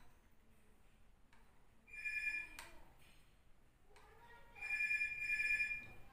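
An electronic ringing tone sounds twice at a steady pitch: a short ring about two seconds in and a longer one from about four and a half seconds, with a sharp click just after the first.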